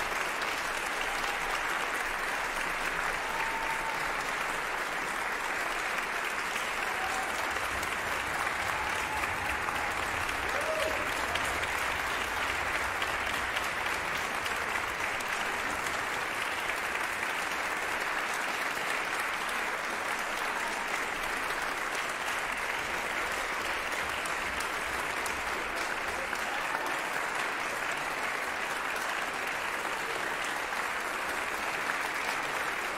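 Concert hall audience applauding steadily, with a few short cheers in the first ten seconds or so.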